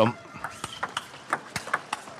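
Table tennis ball being struck by rackets and bouncing on the table during a rally: a quick, uneven series of sharp clicks over the faint background of an arena crowd.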